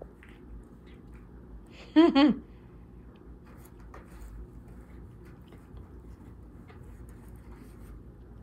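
Faint rustling and scratching of a cat rubbing its head and body against a corrugated-cardboard scratcher on a tiled floor, with a woman's short laugh about two seconds in.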